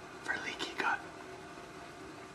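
A man whispering a few words in the first second, his voice lost.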